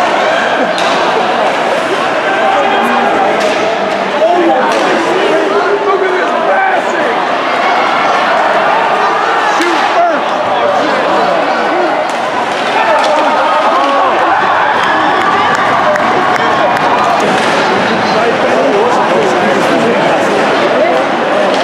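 Spectators chattering in the stands of an ice rink's hall, with a few sharp knocks from the hockey play: puck and sticks striking the boards and ice.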